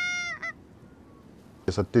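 A goose honk: one drawn, steady note, then a brief second note just after it.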